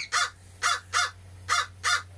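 A person coughing: about five short, harsh coughs in quick succession.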